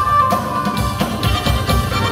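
Live Arabic-style band playing an instrumental passage: a violin melody over keyboard, with hand drum and tambourine keeping a steady beat.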